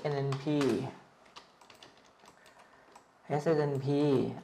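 A few faint computer-keyboard keystrokes, spaced irregularly, as a stock ticker is typed in, with a man's voice saying letters before and after.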